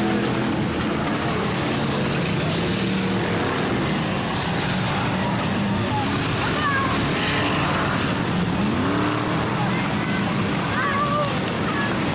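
Several stock-car engines running hard as the cars race around a dirt oval; one engine revs up sharply about two-thirds of the way through.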